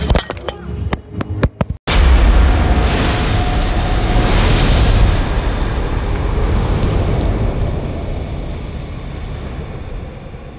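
A few sharp knocks and clicks for about two seconds, then, after a brief cut, a cinematic boom sound effect: a deep rumble with a swelling hiss that peaks about three seconds later and slowly fades.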